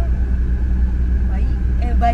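Steady low rumble of a car heard from inside the cabin, with brief snatches of women's voices in the second half.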